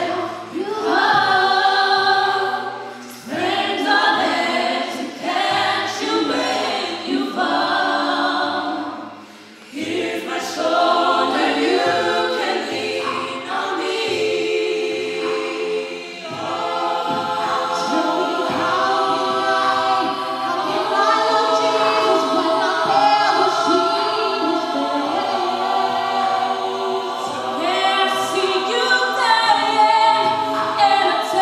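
Mixed-voice a cappella group singing in harmony, male and female voices together with no instruments. The singing dips briefly about three seconds in and nearly breaks off for a moment about nine seconds in before carrying on.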